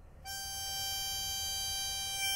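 Harmonica in a neck rack playing one long held note that starts a moment in.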